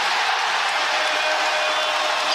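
Home crowd in a basketball arena cheering and applauding a made three-pointer, a steady wash of crowd noise.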